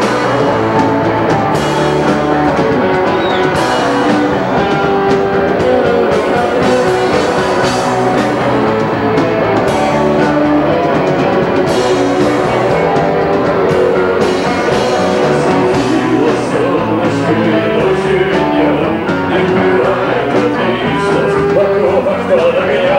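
Live rock band playing loud: electric guitars, bass guitar and drum kit, with a man singing into a handheld microphone.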